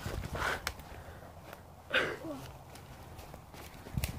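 Footsteps and rustling through woodland undergrowth, with scattered small clicks and knocks and a low rumble of phone handling noise. Two short breathy voice sounds come about half a second in and again about two seconds in.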